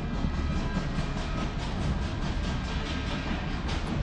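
Music over an arena's public-address system with a heavy bass, mixed with the noise of a cheering crowd.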